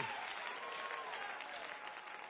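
Congregation applauding softly.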